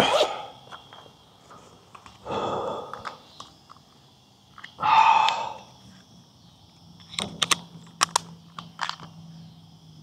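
A man breathing out twice, the second breath about five seconds in and the louder, over a steady high chirring of evening insects. A few light clicks come near the end.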